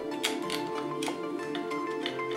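Instrumental background music with sustained notes that step from one pitch to the next.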